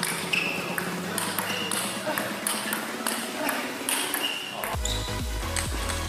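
Table tennis ball clicking back and forth off bats and table in a fast rally. Music with a heavy bass comes in near the end.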